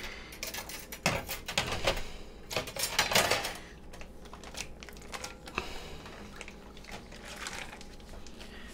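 Stainless-steel wire sous vide rack clinking and rattling while vacuum-sealed bags are pulled out of the water bath, with plastic bags crinkling and water splashing. The clatter is busiest in the first three or four seconds, then settles to quieter handling.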